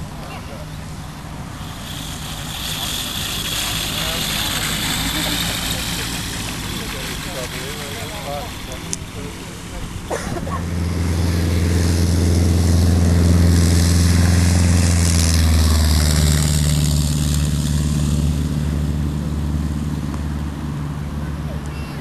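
Light aircraft engines at an airfield. An engine runs at high power through the first seconds. From about halfway through a louder, lower engine drone close by takes over and holds for several seconds, then eases off near the end. A single sharp click comes just before it.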